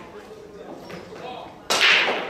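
Low background voices, then a single sharp crack near the end that rings on briefly and is by far the loudest sound.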